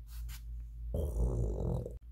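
A person's voice making a rasping, growly snore for a sleeping character, starting about halfway through and cut off abruptly at the end.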